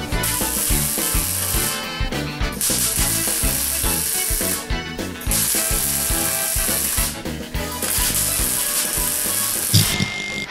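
Arc welder crackling in four bursts of about two seconds each with short pauses between, stitch-welding a steel roof side panel, over background music with a beat.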